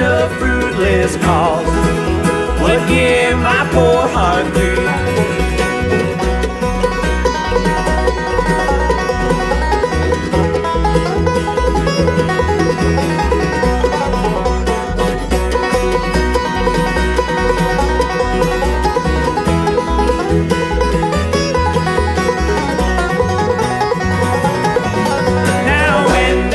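Bluegrass band playing an instrumental break: banjo, fiddle, acoustic guitar and mandolin over an upright bass keeping a steady beat.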